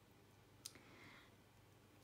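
Near silence: room tone, with one faint, sharp click about two-thirds of a second in.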